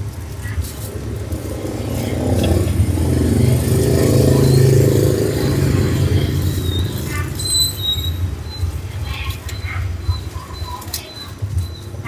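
Road traffic passing the roadside cart: a low vehicle rumble that builds to its loudest about four to five seconds in, then fades back to a steady background hum.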